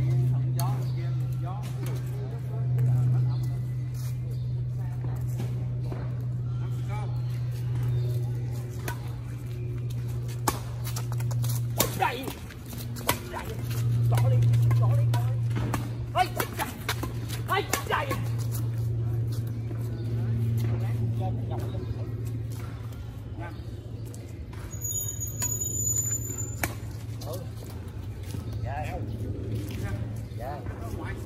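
Badminton rackets striking a shuttlecock during a rally, heard as a series of sharp clicks in two groups, one about a third of the way in and one past the middle. Under them runs a steady low hum, with people talking in the background.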